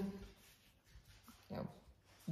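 A pause in conversation with quiet room tone, broken near the end by a short, softly spoken "you know".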